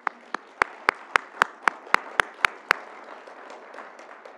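Audience applauding, with one pair of hands clapping close and loud at about four claps a second for the first two and a half seconds. The applause tapers off near the end.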